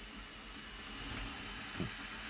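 Steady low hum and hiss of background room noise, with one brief faint sound just before the end.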